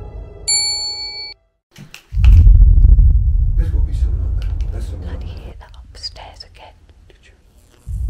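A notification bell dings once, a short chime of clear ringing tones. After a short gap comes a loud low rumble with scattered clicks and knocks, which fades away over several seconds.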